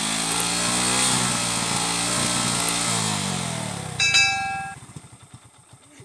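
Hero Glamour motorcycle's single-cylinder engine revved and held high for about three seconds, then let fall back to a slow, even idle, its exhaust blowing into a large balloon tied over the silencer. As the revs drop, a bright ringing chime, the loudest sound, cuts in for under a second.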